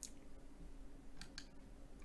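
Three faint, sharp clicks of a computer mouse: one at the start, then two close together just past a second in.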